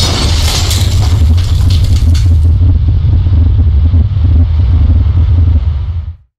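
Animated logo-reveal sound effect: a deep, steady rumble with a crash of shattering stone and scattering debris over the first two and a half seconds, then the rumble alone until it stops at the end.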